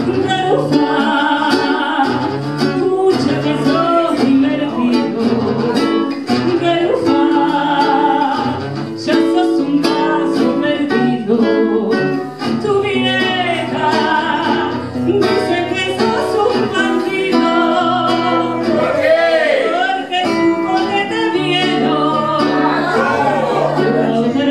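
A live tango song: an acoustic guitar plays the accompaniment while a woman sings into a microphone.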